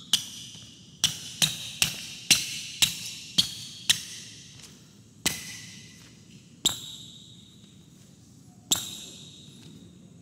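Basketball shoe outsoles squeaking on a hardwood court during footwork. A quick run of about seven sharp squeaks comes at roughly two a second, then three more spaced a second or two apart, each with a short echo. The squeaks are the rubber outsole gripping the floor.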